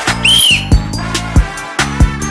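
A single short whistle blast about a quarter second in, its pitch rising then falling, given as the "go" signal to start a game. Hip-hop music with a heavy beat and bass plays throughout.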